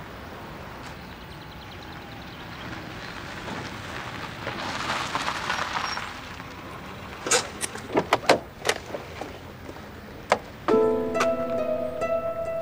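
A small hatchback car drives up over cobblestones and stops, its tyre noise swelling about four to six seconds in. Then come a string of sharp clicks and a thunk, as a car door opens and shuts. Light plucked-string music comes in near the end.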